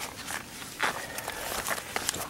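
A person's footsteps walking between garden plants, with leaves rustling: about five soft, irregular crunching steps.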